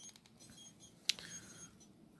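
Faint handling noise from a plastic action figure turned in the hands, its leg joints being worked, with one sharp click about a second in.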